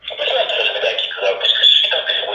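Voices talking loudly and continuously, heard thin and tinny as if played through a small speaker, cutting in abruptly out of silence.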